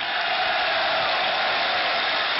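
Large crowd cheering and applauding, breaking out suddenly and holding loud and steady, in response to the announcement that the Moldovan language will use the Latin script.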